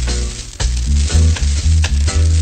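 A reggae dub track played from a dubplate: a heavy, stepping bassline and drum hits under constant crackle and hiss of record surface noise. The music dips briefly about half a second in, then comes back.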